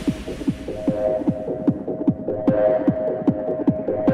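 Hardstyle track in a stripped-down section: a pitch-dropping kick drum beats about three times a second under a sustained synth tone, with the treble mostly cut away and only faint ticks up high.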